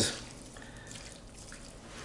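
Water dribbling from a small glass onto seasoned cubed pork in a stainless-steel pan, faint, with a small click near the end.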